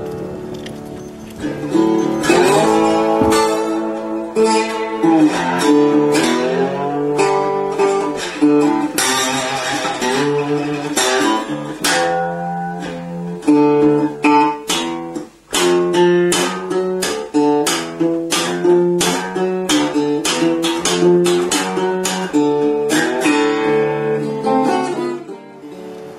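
Background music on acoustic guitar: strummed chords with a steady rhythm.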